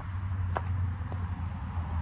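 Steady low rumble of outdoor background noise, with two faint clicks about half a second and just over a second in.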